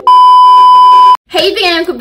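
A TV colour-bars test-tone beep: one loud, steady, high-pitched tone held for about a second, then cut off abruptly, used as an editing transition.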